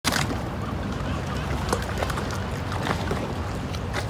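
Water slapping around moored gondolas, over a steady low rumble of wind, with scattered light knocks.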